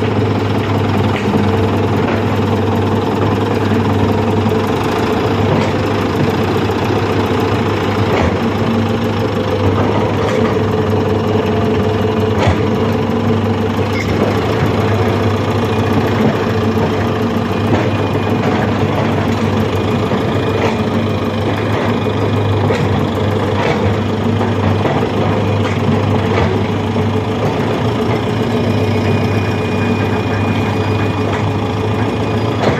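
Heavy construction-machine diesel engine running steadily, a constant low drone with scattered faint clicks.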